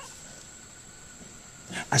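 Faint steady background hiss with a thin, high steady whine through a pause. A man's narrating voice begins near the end.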